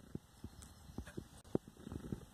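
Hands pressing and crumbling potting soil around a root ball in a plastic bucket: a scatter of soft, irregular taps and crackles, a couple of them a little sharper about a second in and again half a second later.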